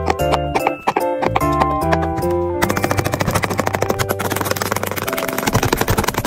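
Silicone pop-it fidget toy's bubbles being pressed, popping in quick succession about ten times a second from a little under halfway in, over background music.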